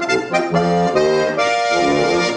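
Accordion playing a folk tune: quick-changing melody notes over held chords.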